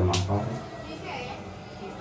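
A man's voice speaking briefly at the start, then quieter talk in the background.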